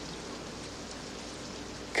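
Steady rain, an even hiss with no distinct drops or strikes.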